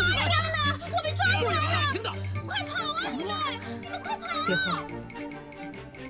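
Women's voices speaking over a background music score, with a low sustained note under the first couple of seconds.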